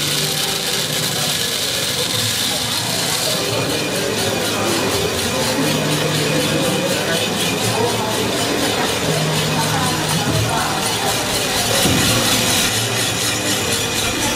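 Green coffee beans poured into the hopper of a small electric drum coffee roaster, a bright rushing hiss for the first three seconds or so. Then the roaster runs steadily, a continuous whir with a fast, even rattle as the beans tumble in the drum.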